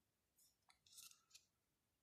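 Near silence, with a few faint clicks and scrapes about a second in, from fingers handling tarot cards on a cloth-covered table.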